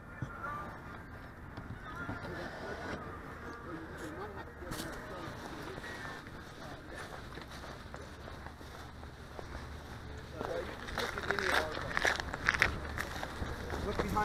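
Indistinct voices of people talking some way off, picked up by the boat's onboard camera. From about ten seconds in come louder rustling and knocks of the boat being handled and carried.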